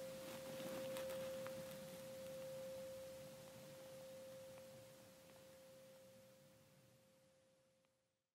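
A faint, steady pure tone held at one mid pitch, slowly fading away and dying out near the end.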